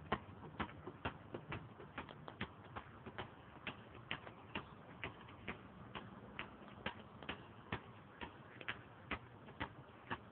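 A basketball being dribbled on asphalt: a steady run of sharp bounces, about two a second.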